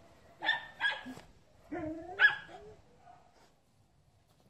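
A dog barking in two bursts: two quick barks about half a second in, then a longer, loudest bark about two seconds in.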